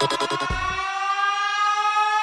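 A rapid stutter of repeated pulses, then a single sustained siren-like tone that glides slowly upward in pitch.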